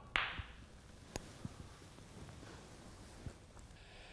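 Snooker balls knocking on the table. A brief rush at the start as the cue ball comes off the red, then a sharp click about a second in and a few fainter knocks as the balls run on to the cushions and pocket.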